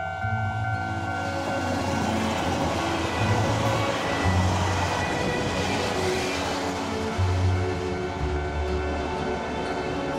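A train passing at speed over a level crossing, its rushing rail noise building to a peak around the middle and fading near the end, heard under background music.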